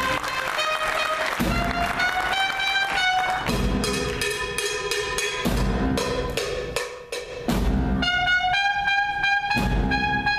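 Student jazz big band playing: a trumpet solo line climbs in steps over the drum kit and accompaniment, with low band hits about every two seconds. The band drops back briefly around seven seconds, then comes in again.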